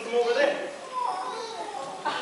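Speech only: voices of actors speaking on stage, picked up through a handheld microphone.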